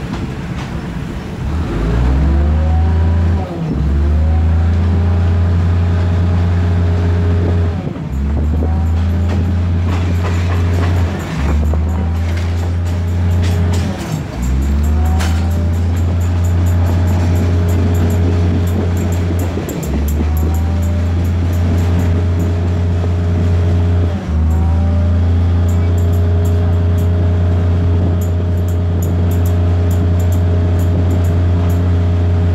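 Diesel railcar engine under load heard from inside the train, a deep steady drone that drops out for a moment about six times and each time comes back rising in pitch. Faint fine ticking sits above it in the second part.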